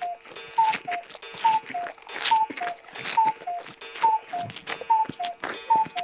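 Cartoon sound effects: a clock ticking in two alternating pitches, tick-tock about twice a second, under quick irregular chomping and gobbling noises of rapid eating.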